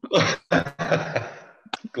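Short, breathy non-speech vocal sounds from a person, heard through a video-call connection.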